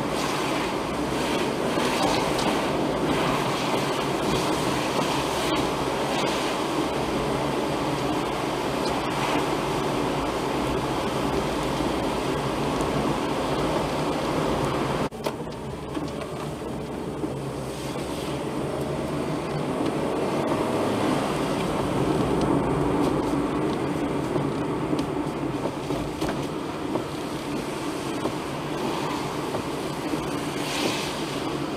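Steady road and tyre noise of a car driving on wet pavement, heard from inside through a dashcam's microphone. The level drops suddenly about halfway through, then builds back up gradually.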